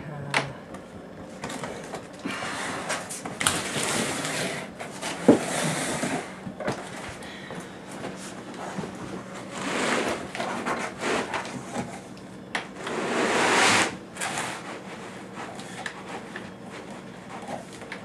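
Cardboard box and foam packing inserts scraping and rustling as a boxed all-in-one computer is slid and worked out of its carton, in several long swells with a few sharp knocks; the longest and loudest scrape comes near the end.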